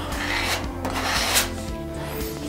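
Plastic spreader scraping nitro putty across a panel, pressing it into the surface in two strokes of about half a second each.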